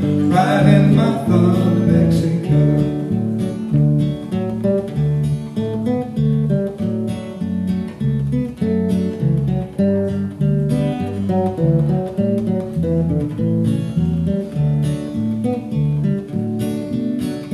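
Acoustic guitar and electric bass guitar playing an instrumental break, the last sung note dying away in the first second or so.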